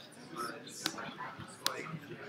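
Faint voices talking quietly, with two sharp clicks about a second apart.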